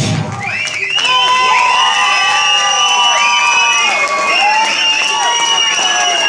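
The rock band's final chord cuts off at the very start, and the audience cheers and shouts, with many overlapping high calls.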